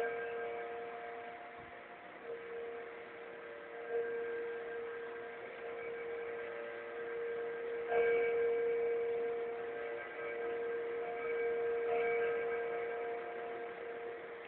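A large bell tolling, struck about every four seconds, each stroke ringing on in a long steady hum until the next.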